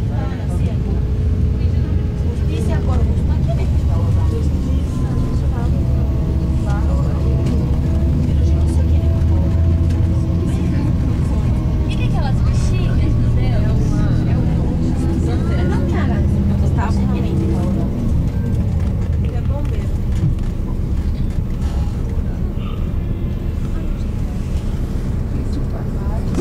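Steady low engine and road rumble heard from inside a moving tour bus, with faint chatter of passengers over it.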